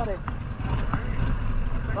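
Harley-Davidson Sportster 883's air-cooled V-twin idling at a standstill, a steady low rumble.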